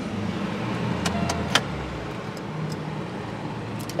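Car engine idling with a steady low hum, heard from inside the cabin, with a few light clicks about a second in.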